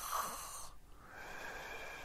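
A man breathing close to the microphone in a pause between phrases: one soft breath ends under a second in, and a second, longer one starts about a second in.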